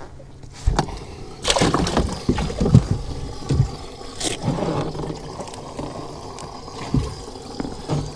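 Hollow knocks and clatter of a fishing boat's live-well hatch, with water splashing, as a caught crappie is dropped into the live well.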